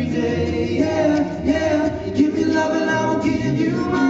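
All-male a cappella group singing live into microphones: a lead voice over held vocal harmonies and a sung bass line, with no instruments.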